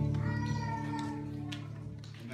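The final chord of a live band's hymn performance dying away, with a high wavering held note above the sustained low notes, the whole sound fading steadily.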